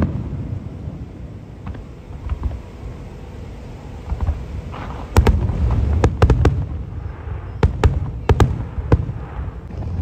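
Aerial fireworks shells bursting over a low rumble: a few faint pops in the first half, then a quick run of loud, sharp bangs from about five seconds in.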